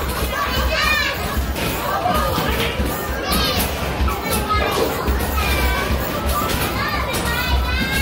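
Busy arcade din: children's voices and game-machine music over repeated thuds of basketballs being shot at a mini basketball arcade machine and rolling back down its ramp.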